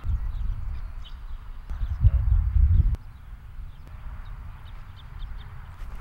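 Wind buffeting an outdoor microphone: uneven low rumbling, strongest in the first three seconds and peaking at about two to three seconds, then easing to a softer rustle, with faint short high chirps underneath.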